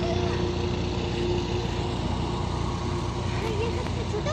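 Steady wind rumble on the microphone over the noise of traffic on the road, with a vehicle engine's hum that weakens after the first second or so.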